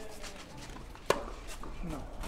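A tennis racket strikes the ball once, a single sharp crack about a second in, over faint scuffing of feet on a clay court.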